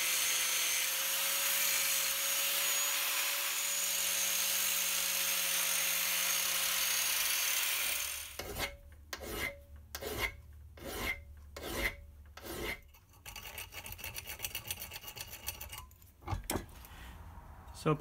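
Handheld angle grinder running steadily against a steel indicator bracket held in a vice, rough-shaping it with a constant whine. About eight seconds in the grinder stops and a hand file takes over: separate strokes about two a second, then quicker, lighter strokes.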